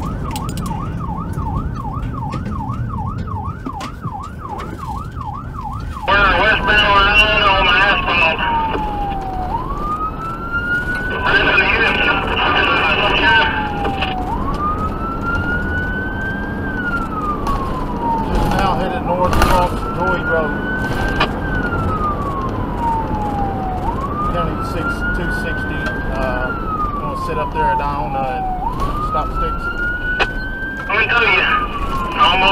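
Police car siren over road noise. For the first six seconds it is a fast yelp. It then changes to a slow wail that climbs quickly and falls slowly, about every four and a half seconds, with short bursts of a harsher, higher tone about six and eleven seconds in.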